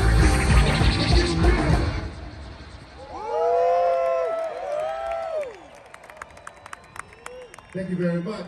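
Live heavy rock band playing loudly through the stage PA, stopping abruptly about two seconds in. A few long whooping cheers follow from the audience, then scattered clapping.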